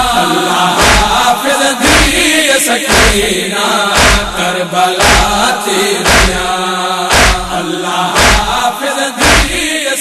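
Noha: a Saraiki mourning lament chanted by voices over a steady percussive beat of about two strikes a second, with a heavier stroke about once a second.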